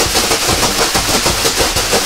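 Leafy sauna bath whisks (vantos) swung by two bath masters at once, rustling through the air and slapping on a person's back in a dense, rapid run of strikes: four-handed switching.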